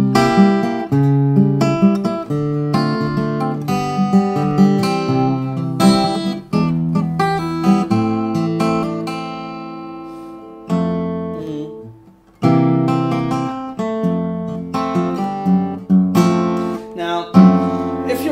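Taylor acoustic guitar played fingerstyle: a slow gospel-style blues chord progression with a moving bass line, the chords picked and left to ring. About eight seconds in, one chord rings out and fades for a few seconds before the playing picks up again.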